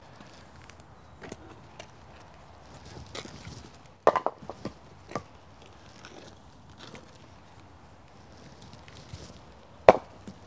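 A hand-thrown wooden ball strikes a set of carved elm skittles, making a quick clatter of several sharp wooden knocks about four seconds in as the pins go over, with a few lighter knocks just after. A few faint knocks come before it, and there is one more sharp knock near the end.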